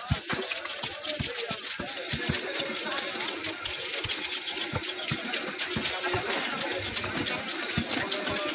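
A large knife scraping the scales off a big catla fish in many quick, irregular strokes, with short knocks against the fish and the wooden chopping block.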